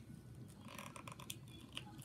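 Faint handling noise of a phone being pried out of a snug plastic case: soft scraping with a few small clicks.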